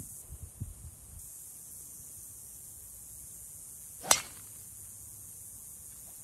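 A driver striking a golf ball off a tee: one sharp crack about four seconds in, over a steady high hiss.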